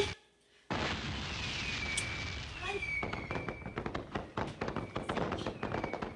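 Fireworks sound effect in a theatre: a sudden burst with falling whistles, then rapid crackling pops through the second half.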